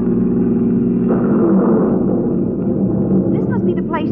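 Radio-drama sound effect of a car engine running steadily as the car drives along, a low even hum. A voice starts over it near the end.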